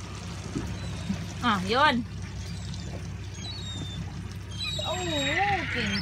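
A boat's outboard motor idling with a steady low drone, with water sloshing against the hull.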